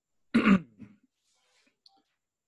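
A man clearing his throat once, briefly and loudly, with a small follow-up rasp just after.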